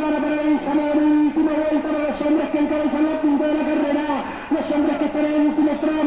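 A man's voice calling out in long, drawn-out announcing tones, the words not made out.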